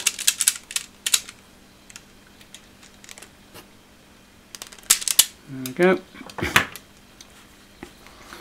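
Self-adjusting wire strippers clicking as their jaws clamp and strip the insulation off green hookup wire: a cluster of clicks at the start, another about five seconds in, and one sharp snap about six and a half seconds in.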